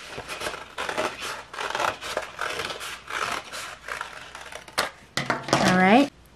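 Scissors snipping through a manila file folder in quick, irregular cuts, with paper rustling as the cut-out circle is handled. A woman's voice rises briefly near the end.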